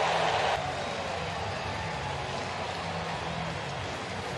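Ballpark crowd cheering steadily just after a home run, an even wash of many voices.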